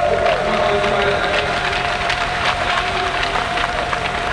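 Applause, with scattered hand clapping throughout, over background music.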